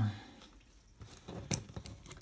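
Trading cards handled and slid against one another in the hands: a few soft clicks and rustles, the sharpest about a second and a half in.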